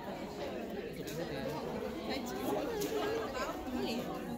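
Several people talking at once: a steady babble of overlapping voices in a room.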